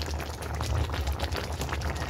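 Broth simmering around a whole chicken in a pot, with a dense bubbling crackle over a steady low rumble.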